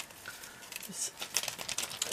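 Light rustling and small clicks as a ribbon spool and its paper wrapper are handled.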